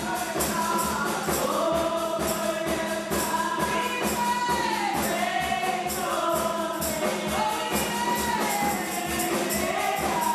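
Gospel praise song sung by a small group of women into microphones, lead voice holding long notes over backing voices, with a steady percussion beat underneath.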